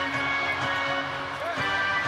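Arena background music with steady held notes over crowd noise during live play.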